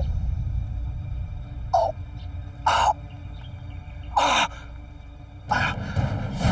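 A man gasping hard for breath: four short, ragged gasps about a second or so apart, the middle two the loudest, over a low rumbling background.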